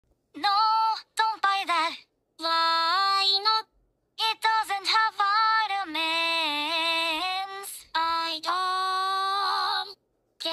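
A high-pitched voice singing in short phrases, with long held notes and small pitch glides, broken by abrupt cuts to silence between phrases.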